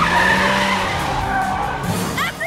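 Cartoon sound effect of the PJ Masks Cat-Car's tyres screeching in a skid: a high squeal over a rush of noise that starts suddenly and stops just before the end, with music underneath.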